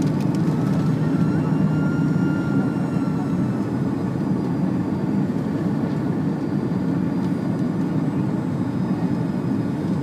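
Steady cabin drone of an Airbus A330-300 airliner in descent, heard from inside the cabin: engine and airflow noise, low and even.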